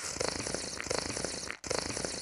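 A person drinking coffee from a mug: faint gulping and swallowing sounds, a few times over.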